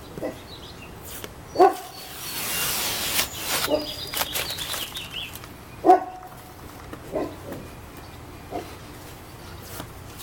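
Blue masking tape being peeled off a car's window trim and door, with one long tearing pull about two seconds in. A dog barks about six times, loudest about a second and a half in and again about six seconds in.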